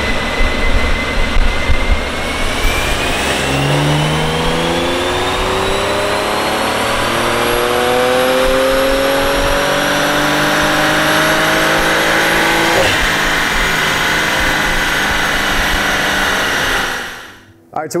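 Porsche Macan Turbo's 3.6-litre twin-turbo V6 making a full-throttle pull on a chassis dyno, revs climbing steadily with a high whine rising alongside. About two-thirds of the way through the pitch breaks off sharply, then the sound holds steady before fading out near the end.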